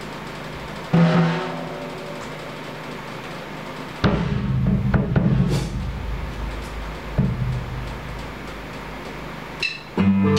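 A few separate hits on a PDP drum kit, the drums ringing on after each: one about a second in, then a louder cluster of deep-toned hits around the middle and one more a little later.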